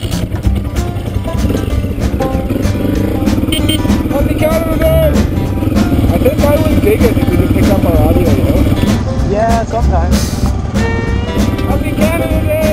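Single-cylinder KTM dual-sport motorcycle engine running as the bike pulls away and rides on, mixed with background music and a voice.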